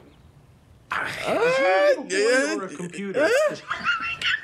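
A person's voice with wide sweeps up and down in pitch, coming in about a second in after a short lull.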